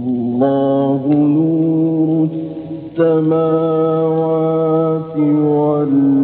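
A male Quran reciter chanting in the drawn-out melodic mujawwad style, holding long, ornamented notes in three phrases with short breaths between them. The recording is an old one from the 1960s.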